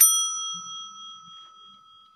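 A single bright bell ding, struck once at the start and ringing out as it fades slowly over about three seconds. It is an added notification-style sound effect.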